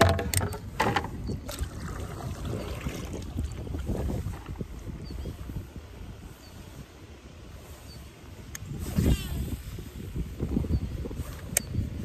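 Wind rumbling on the microphone over water around a small fishing boat, with a few sharp clicks and knocks near the start and end and a brief pitched sound about nine seconds in.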